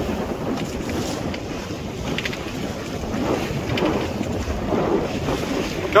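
Wind buffeting the microphone over a steady rush of water along the hull of a Hawk 20 sailing day boat, heeled over and sailing close-hauled through choppy sea.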